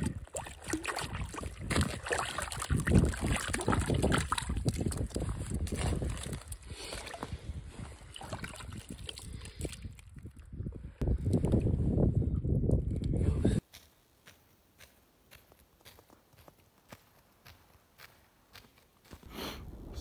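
Water sloshing and splashing at an ice-fishing hole, with irregular knocks and scrapes of handling. It cuts off suddenly about two-thirds of the way through, leaving near silence.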